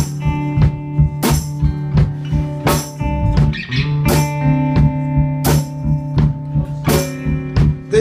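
Live blues band playing an instrumental passage: electric guitar and bass guitar over a drum kit, with drum and cymbal hits falling at a steady beat.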